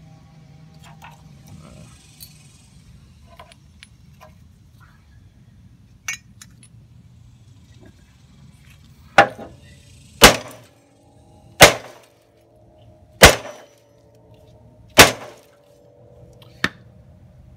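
Five hard hammer blows on the steel mower deck in the second half, one to two seconds apart, each leaving a short metallic ring. They are blows to knock a dented section of the deck back into shape. Before them there are only a few faint clinks.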